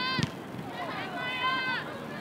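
High-pitched voices shouting and calling out during a soccer match, with one long held call about a second in. A single sharp knock comes just after the start.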